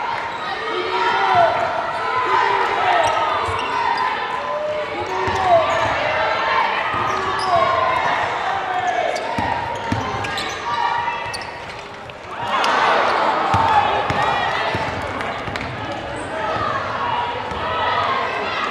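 Live basketball game sound in a gym: a busy blend of crowd and player voices with a basketball bouncing on the hardwood and scattered short impacts. It drops away briefly about two-thirds of the way through, then comes back louder.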